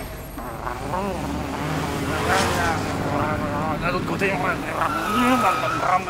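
Sound of a bus driving off: a steady engine rumble with wavering, rising and falling pitches over it.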